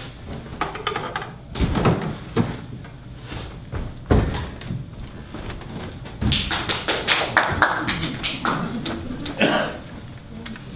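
Knocks and thuds of actors moving about a stage set, a few separate ones first, then a quick run of clicks and taps in the second half.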